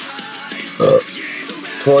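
A single short burp from a man who has been drinking a large quantity of milk, about a second in, over background guitar music.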